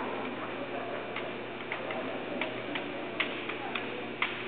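Bamboo shinai clicking lightly against each other, about ten short, irregular taps as two kendo fencers probe at the sword tips, over a murmuring crowd.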